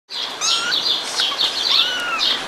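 Young kittens mewing: several thin, high-pitched cries, each rising and falling in pitch, the last a longer arched cry near the end.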